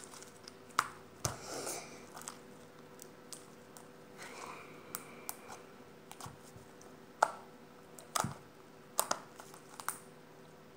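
Pink slime with lotion kneaded into it, squeezed and pulled between the fingers, giving irregular sticky clicks and pops, a few sharper ones in the last few seconds.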